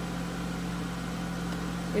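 Steady low hum made of a few fixed low tones, with no change in level.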